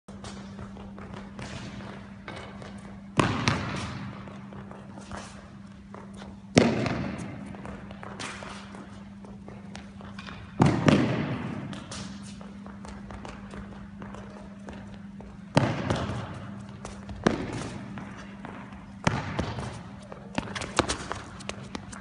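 Tennis balls struck by a racket: sharp hits every two to four seconds, each ringing on in the large indoor tennis hall, over a steady low hum.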